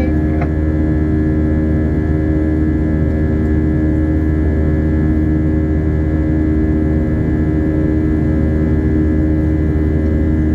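Steady in-flight cabin drone of an Airbus A320-232 heard from a window seat by the wing. The IAE V2500 turbofans give a constant hum with several steady tones over a low rumble.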